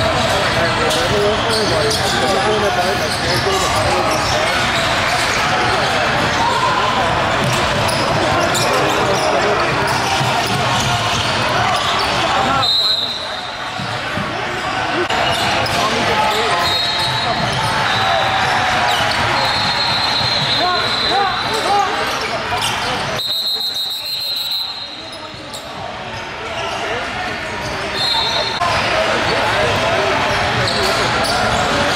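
A basketball dribbled on a hardwood court, with many voices of players and spectators echoing in a large gym. The sound dips briefly twice, about 13 and 23 seconds in.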